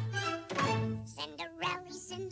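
Cartoon soundtrack music with a single thunk about half a second in. From about a second in come high, quickly gliding voices like cartoon mice chattering.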